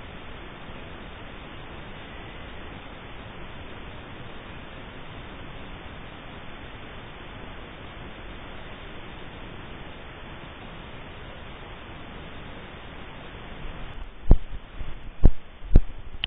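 Steady, even hiss of a thermal scope's built-in microphone recording a quiet field. About two seconds before the end come three sharp knocks of the scope being handled.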